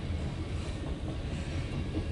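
CSX mixed freight train's cars rolling past on the main line: a steady noise of wheels on the rails.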